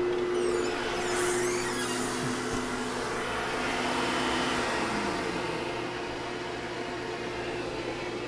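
A shop vacuum and a CNC trim router run steadily together, with some scraping and rattling from the enclosure door early on. About four to five seconds in, the router is switched off and its whine falls in pitch as it spins down, while the vacuum keeps running.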